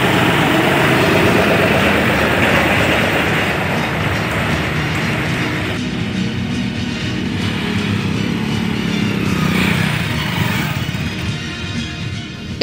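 Small engines working through deep mud, under background music: a three-wheeled auto-rickshaw, then, after a change about six seconds in, a motorcycle.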